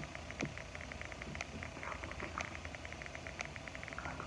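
Quiet room with a faint sharp tick about once a second and a fainter rapid clicking beneath it.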